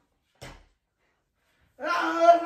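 A short, soft sound about half a second in, then near the end a young person lying on the mat lets out a loud, drawn-out wordless cry, its pitch rising and falling.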